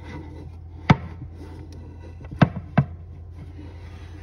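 Large wooden cutting board knocking against the countertop as it is stood on edge and set in place: one sharp knock about a second in, then two more close together a moment later, with light rubbing of wood on the surface.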